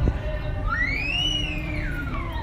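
A single whistled tone starting a little under a second in, gliding up, holding high, then sliding back down. It plays over steady outdoor background noise, with a brief thump at the very start.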